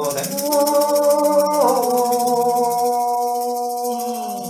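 Icaro (ayahuasca medicine song): a voice holds one long sung note that steps down in pitch about a second and a half in, over a rattle shaken fast and steadily.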